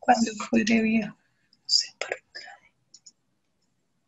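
A man's speech that trails off about a second in, followed by a few short whispered sounds.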